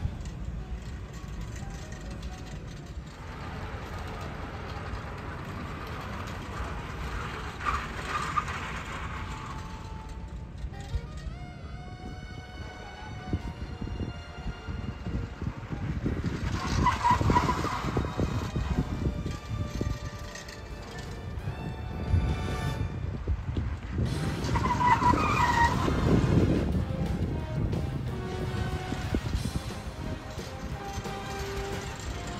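Honda Civic skid car on a skid-rig dolly sliding on asphalt, its tyres squealing and engine running in three bouts, over background music.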